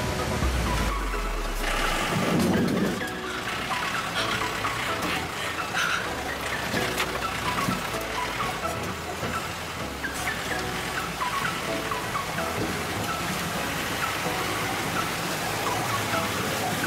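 Background music with a low bass line that changes note every second or two, under short repeated higher notes.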